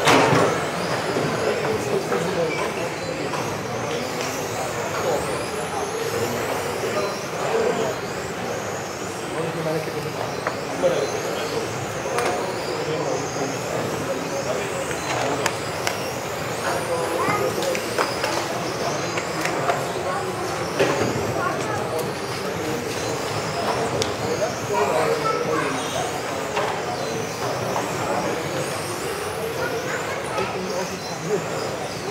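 Several electric RC cars racing in a reverberant sports hall, their motors whining up and down in pitch as they accelerate and brake, with a few sharp knocks from cars hitting each other or the track markers.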